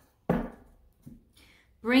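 A sharp tap that fades over about half a second, then a fainter click about a second in: tarot cards being laid down on a table.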